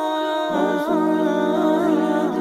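Wordless vocal background music: layered voices humming a slow, wavering melody without instruments, with a lower held voice joining about half a second in.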